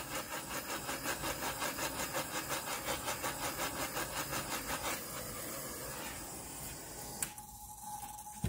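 Torch flame hissing as it is passed over fresh epoxy on a tumbler to pop the bubbles and warm the resin. The hiss pulses about three times a second, runs steadier and quieter about five seconds in, and a single click sounds near the end.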